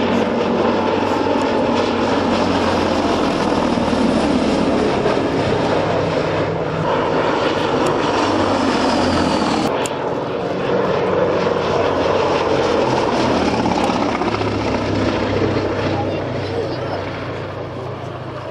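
Gloster Gladiator biplane's Bristol Mercury nine-cylinder radial engine and propeller running under power in flight, a loud, steady drone that eases and fades a little near the end.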